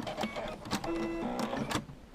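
Brother SE425 embroidery machine stitching: needle clicks mixed with short whirring motor tones as the hoop steps along. It stops about two seconds in.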